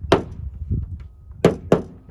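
Mallet striking a tight plastic bug-deflector mounting bracket to drive it onto the edge of a truck hood: three sharp knocks, one near the start and two in quick succession about one and a half seconds in.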